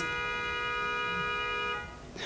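A car horn held in one long, steady honk of nearly two seconds that cuts off near the end: an impatient honk.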